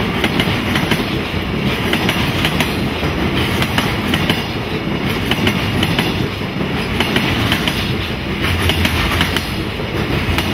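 Freight train's container flatcars rolling past at speed: a steady rumble of steel wheels on rail with frequent clacks as the wheelsets pass over the rail.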